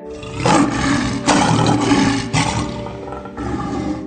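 Lion roar sound effect, made of three long rough surges starting about half a second in and fading after three seconds, over faint music.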